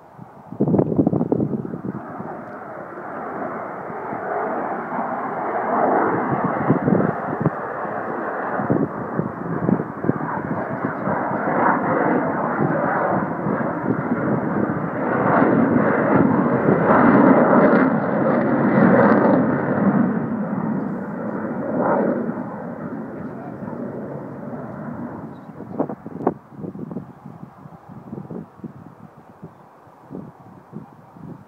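An Avro Vulcan bomber's four Rolls-Royce Olympus turbojets as it flies past. The jet noise builds over several seconds, is loudest around the middle, then fades away.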